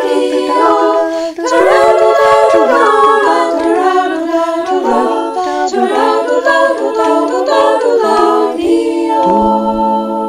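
A small group of women singing a lullaby unaccompanied in close harmony, with a brief breath break about a second in, then closing on a long held final chord near the end.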